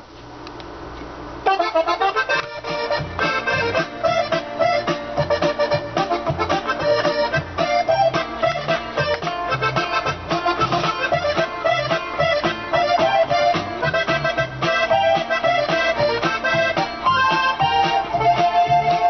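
Hohner Corona II Classic three-row button accordion tuned in G playing a song's introduction in the key of F: a melody over a steady bass-and-chord rhythm. The playing starts about a second and a half in.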